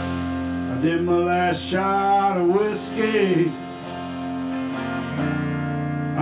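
Live band playing an Americana-rock song on electric guitars, electric bass and drums, with sustained chords. A lead line bends in pitch from about one to three and a half seconds in, and comes in again near the end.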